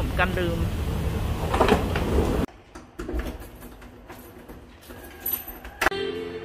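Rumbling, rattling noise of a wheeled suitcase rolling along a hard walkway, with a brief spoken word at the start. It cuts off suddenly about two and a half seconds in, leaving quiet background sound with a few faint clicks and two sharper clicks near the end.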